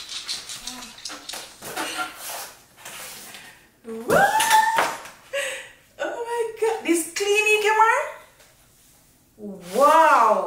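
Cardboard rustling and light knocks as a box lid is lifted off and set aside, then from about four seconds in, excited high-pitched wordless voice sounds: drawn-out oohs and squeals.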